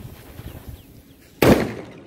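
A Volcano brand 'Tracer' sound bomb, a small ball-shaped single-sound firecracker, exploding with one loud bang about one and a half seconds in, followed by a short echo.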